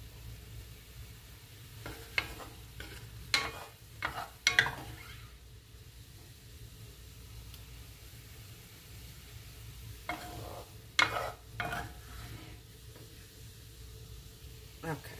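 A wooden spoon scooping cooked egg-roll filling out of a cast-iron skillet into a glass bowl, with sharp knocks and scrapes of spoon, bowl and pan against one another. The knocks come in a cluster a couple of seconds in and another about ten seconds in, over a faint steady sizzle from the liquid left in the pan.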